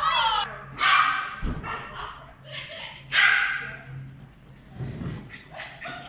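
A dog barking during an agility run: loud barks about a second in and about three seconds in, with a person's voice as well.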